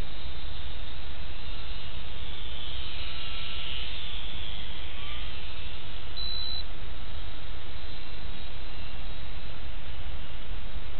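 Faint high whine of an ultra-micro RC plane's small electric motor, the E-flite UMX P-47 BL, swelling and fading about three to five seconds in as it passes, over a steady low rumble. A short high beep sounds about six seconds in.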